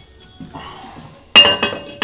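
The lid of an enamelled cast-iron casserole set back onto the pot: one sharp ringing clank about a second and a half in, after some fainter rattling.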